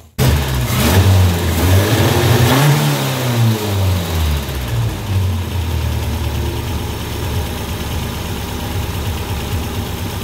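1982 Toyota Corolla engine running on a new Weber carburetor. It revs up once over the first few seconds, eases back down, then idles steadily.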